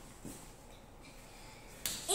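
Quiet room tone, broken by a single sharp click near the end.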